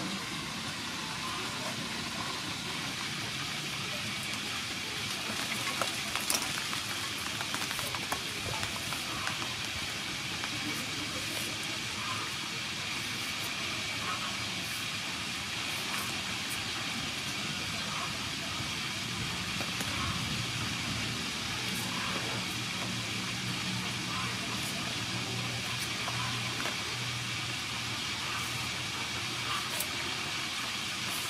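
Steady outdoor hiss with faint, irregular scraping ticks of a hand vegetable peeler stripping the skin off a cucumber. A low hum joins about two-thirds of the way through.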